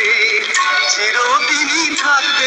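A song with a singer holding and bending sung notes over instrumental backing.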